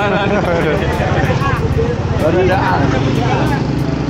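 Voices of several people talking over one another, over the steady low hum of an idling car engine.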